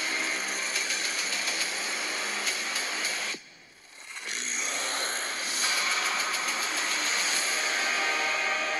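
Trailer score with sound effects: sustained tones under a dense clicking, scraping texture that cuts out suddenly about three and a half seconds in, then swells back up.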